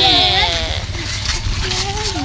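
A loud, quavering, bleat-like cry at the start, followed by further gliding voice sounds.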